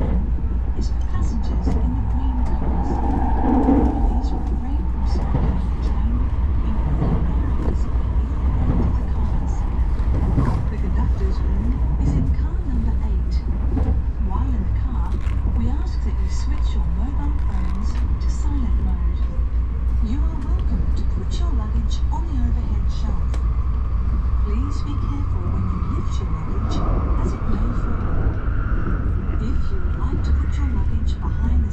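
Inside a Shinkansen bullet train carriage on the move: a steady low rumble of the train running, with a faint whine that rises in pitch over the last several seconds, and passengers' indistinct voices.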